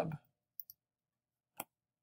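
Computer mouse clicks: two faint quick clicks about half a second in, then a single sharper click at about a second and a half.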